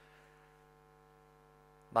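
Faint, steady electrical mains hum in the microphone and sound system: a few steady tones held together without change. A man's voice starts again right at the end.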